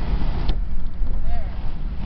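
Car driving on a highway, heard from inside the cabin: a steady low rumble of road and wind noise, with a sharp click about half a second in.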